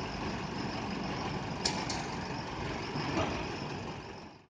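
Steady low running noise of vehicle engines idling, with two brief sharp clicks about one and a half seconds in.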